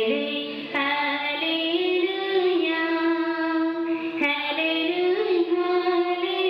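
Voices singing a slow liturgical hymn in long, held notes that change pitch twice, over a steady sustained tone.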